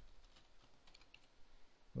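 Faint keystrokes on a computer keyboard, a few scattered soft clicks.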